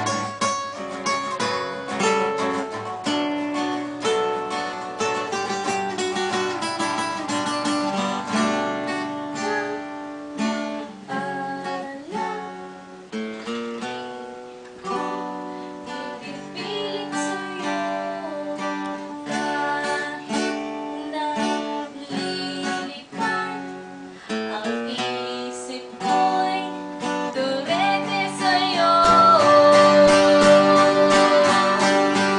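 Acoustic guitars playing an instrumental passage of a song, with picked notes and strummed chords. A singing voice comes in near the end.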